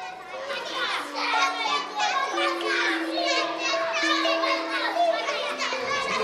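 A crowd of young children's voices chattering and calling out all at once, over soft background music of long held notes.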